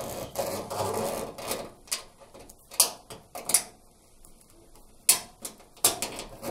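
Corrugated plastic washing-machine drain hose being pushed through the opening in the cabinet's back, its ribs rubbing against the edge for the first couple of seconds. After that come a few separate sharp clicks as the hose is worked further in.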